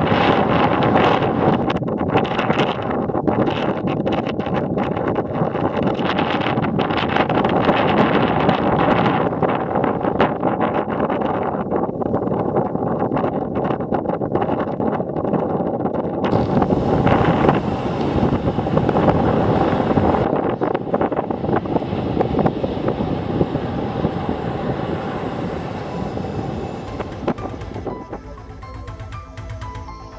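Ocean surf washing over a rocky shore, with wind rushing on the microphone: a loud, steady wash of noise that shifts in tone about sixteen seconds in.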